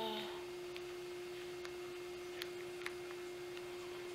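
A steady hum at one pitch, with a couple of faint clicks about two and a half to three seconds in.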